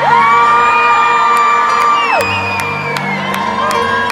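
Live concert music over a cheering, whooping crowd. A long high note slides up, holds for about two seconds and falls away.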